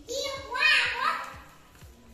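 A young child's voice calling out once for about a second, then fading.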